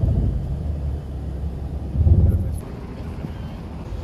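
Steady low road rumble of a moving car heard from inside, with a louder surge of rumble about two seconds in before it drops back to a quieter level.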